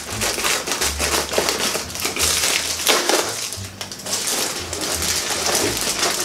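Scissors cutting open a plastic mailer bag, the plastic crinkling and crackling densely and irregularly as it is cut and handled.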